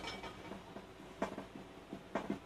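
Hands laying and pressing down a sheet of ceramic fibre insulation on top of a small gas forge: faint rustling with a few light clicks about a second in.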